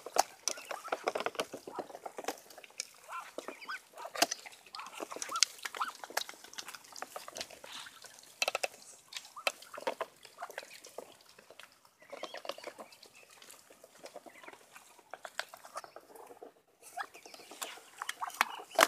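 Muscovy ducks eating greedily from a metal pan of wet mash: a rapid, irregular clatter of bills pecking and dabbling against the pan.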